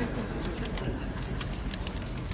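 Sheets of printed paper rustling as they are leafed through close to a microphone: a run of short, irregular crackles over a low steady hum.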